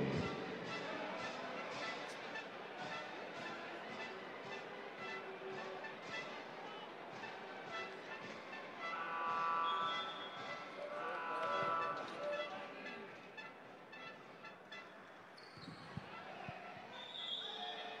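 Gym ambience: faint music from the hall's PA, with volleyballs bouncing and being struck on the court and indistinct voices in the stands.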